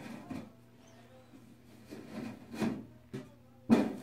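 Galvanized sheet-metal panel being slid into a sheet-metal channel frame: a few short scrapes and knocks of metal on metal, the loudest and sharpest near the end.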